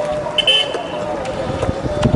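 Street background noise with a short, high horn toot about half a second in, over a steady hum and a few light knocks.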